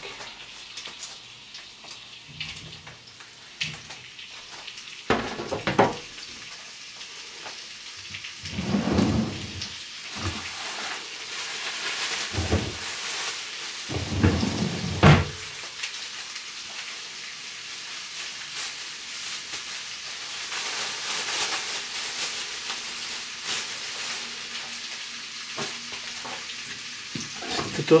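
Potatoes frying in butter in a pan: a steady sizzle that grows louder through the middle. A few short knocks and clatter from kitchen utensils come in the first half.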